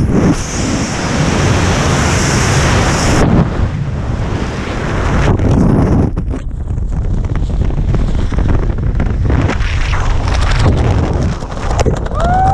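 Wind rushing hard over a skydiver's helmet-camera microphone in freefall. The high hiss cuts off about three seconds in as the parachute deploys, leaving lower, gusty wind buffeting under the opening canopy.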